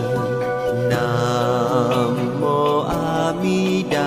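Buddhist devotional chant music: a sung melody with held, wavering notes over a steady accompaniment.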